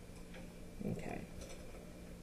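A few faint, light clicks of a pen on paper as the writing is finished and the hand lifts off the sheet, with a brief murmured voice sound about a second in.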